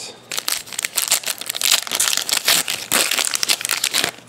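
Foil wrapper of a 2011 Playoff Contenders football card pack being torn open and crumpled: a dense run of crinkling that starts about a quarter second in and goes on with no pause.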